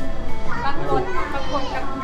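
Children's voices chattering and calling, with background music underneath.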